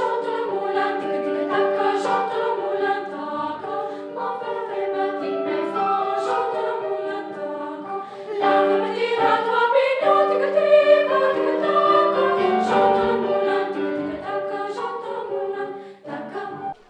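Girls' choir singing, the voices held in long sustained notes, with a brief break between phrases about eight seconds in.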